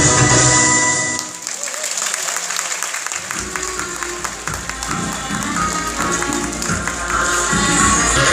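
Recorded stage music ends about a second in and the audience applauds, a dense patter of many hands. Quieter music starts under the applause, and fuller music comes in near the end.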